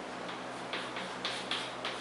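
Chalk tapping and scratching on a blackboard as a short numeral is written: a quick series of short ticks starting just under a second in.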